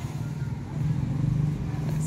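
A motor vehicle engine running nearby, a steady low hum that grows louder about a second in and then holds.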